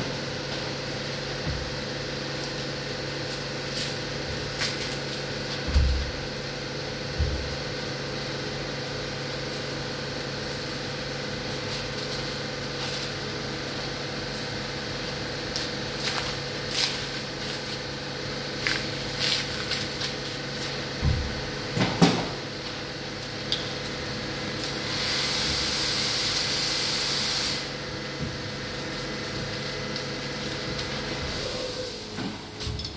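Steady machine hum with the scattered knocks, clicks and low thumps of a butcher's knife and a hanging veal leg being worked on the hook during deboning. A hiss lasts about two seconds near the end.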